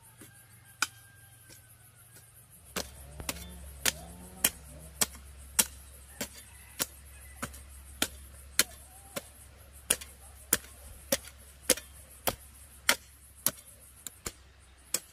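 Hand hoe chopping into dry, clumpy soil: a few lighter strikes, then from about three seconds in a steady run of sharp strokes, a little under two a second.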